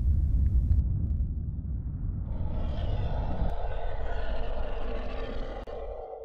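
Deep rumbling sound effect of a video intro, joined about two seconds in by a hissing, shimmering higher layer; the whole sting ends abruptly.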